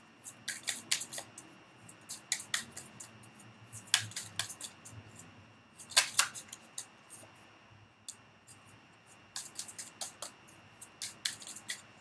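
A deck of oracle cards being shuffled by hand: an irregular run of sharp card clicks and slaps, loudest at about four and six seconds in.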